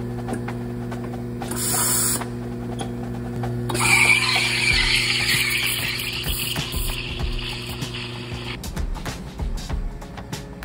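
Espresso machine steam wand frothing milk in a stainless steel pitcher: a steady hiss from about four seconds in that cuts off near the end, over the machine's steady hum. There is a short burst of hiss about two seconds in.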